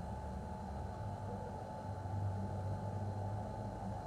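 Low, steady rumble of street traffic, with no distinct events.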